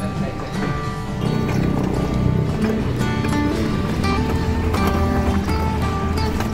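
Background instrumental music, a run of held notes at a steady level.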